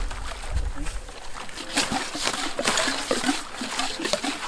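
Water splashing and sloshing as a PVC intake pipe is dipped and drawn through river water to fill it, with irregular splashes throughout.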